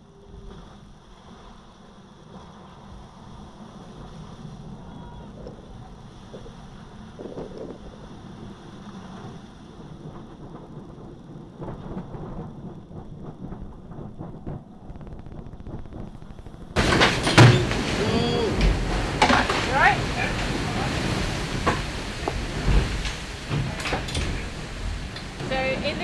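Seawater and spray washing over the deck of an offshore racing yacht in heavy weather, with wind and water loud on the microphone. The rush is muffled at first, then turns suddenly much louder about two-thirds of the way through as the boat is swamped and heeled hard.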